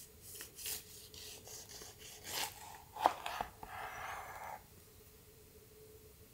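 Kitchen knife cutting through a whole orange in a series of short strokes, then a sharp knock about three seconds in as the blade reaches the plastic cutting board, followed by about a second of softer scraping.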